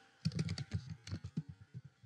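Typing on a computer keyboard: a quick run of a dozen or so keystrokes, starting a moment in and lasting about a second and a half.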